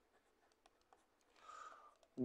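Near silence, with a few faint light ticks and, about one and a half seconds in, a brief faint scratch of a stylus writing on a pen tablet.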